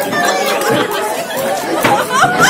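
Speech only: several voices talking over one another in lively Bengali stage dialogue.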